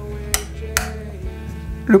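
Two short clicks about half a second apart from the small compartment door of a 1/24 model fire truck being pressed shut, over steady background music.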